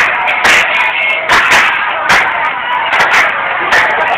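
Hand claps from dancers rehearsing, a string of sharp, irregularly spaced smacks, about ten in four seconds, over a steady background din.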